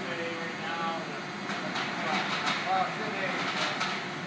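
Indistinct talk among several people over a steady warehouse machinery hum, with a run of short clatters in the second half.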